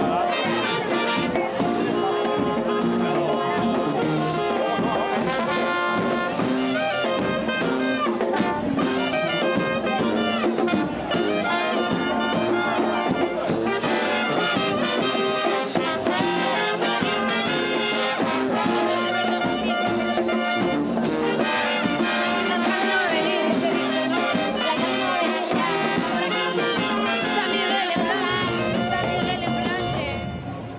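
A street brass band, a Spanish peña charanga, playing a lively tune on trumpets and trombones with a drum, without a break.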